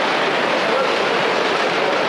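Steady din of workshop machinery on a machine-building factory floor, an even noise with no distinct strokes or rhythm.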